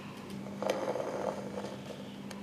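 A thin glass plate being handled against a transmittance meter: a few light clicks and a short scrape of glass, over a steady low electrical hum.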